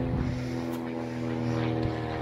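A motor running steadily, a low even hum with no change in pitch.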